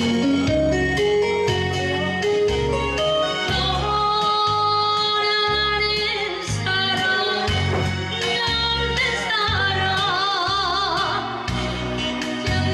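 A woman singing a traditional Korean trot song live over a backing track with a steady bass beat, her voice held in heavy vibrato near the end.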